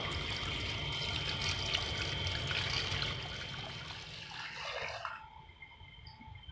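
Tap water running into an enamel pot while a hand rinses the pieces inside. Near the end the flow eases and the pot's water is tipped out in a short pour before it stops.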